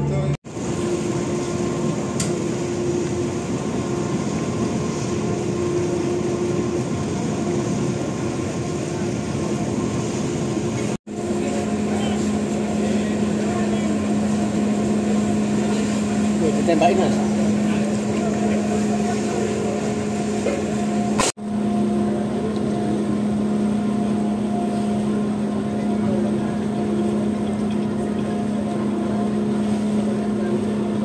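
Steady low drone of ship engines at a harbour, with faint voices behind it. The sound drops out abruptly twice where the recording is cut.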